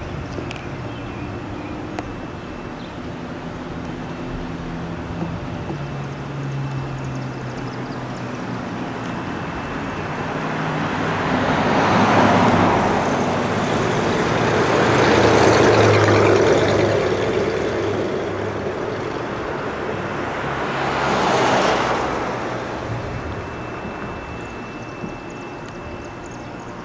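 Street traffic: three vehicles pass one after another, each swelling and fading, over a low steady engine hum.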